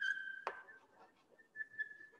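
Chalk writing on a blackboard: a thin, steady high squeal from the chalk with faint ticks of the strokes, a sharper tap about half a second in, then quieter writing with the squeal returning faintly near the end.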